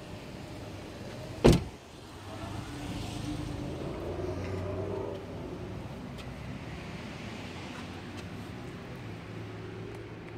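A single sharp knock, then a low vehicle engine hum that swells for a few seconds and eases to a steady drone.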